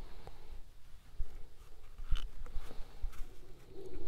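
Quiet handling sounds of a pen being drawn around a leather hide, with a few faint light knocks.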